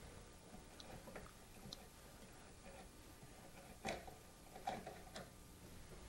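Faint, sparse metallic ticks and clicks of a thread-chasing die turning on the threaded end of a guitar truss rod, chasing marred threads clean. Two slightly louder clicks come about four and five seconds in; otherwise it is near silence.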